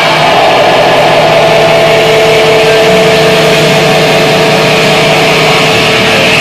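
Loud, steady drone of distorted electric guitar through an amplifier, held tones ringing with feedback and no drum beat.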